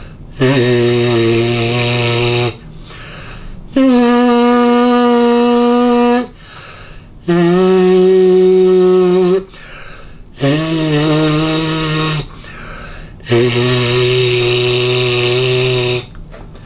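A brass player's lips buzzing freely without a mouthpiece: five held buzzed notes of about two seconds each, with short breaks for breath. The second note is the highest, and the rest step down to end low, where the first began.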